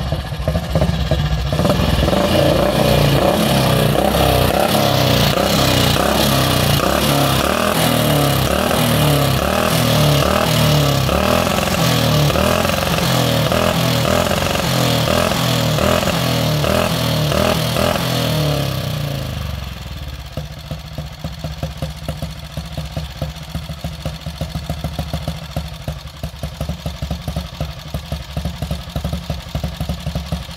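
Jawa 350 OHV single-cylinder four-stroke motorcycle engine running as the bike is ridden up close under throttle. About two-thirds of the way in it drops to a quieter, even idle with a regular beat.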